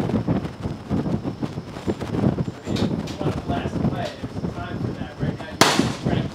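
A single sharp rifle shot near the end, over the steady rumble of wind on the microphone and faint voices at the range.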